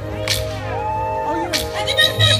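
Live band music with two sharp drum cracks, about a quarter second and a second and a half in, and a held melodic note between them; the low bass drops out during this stretch.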